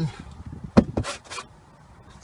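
A single sharp knock, followed by a few brief scraping rustles, then quiet.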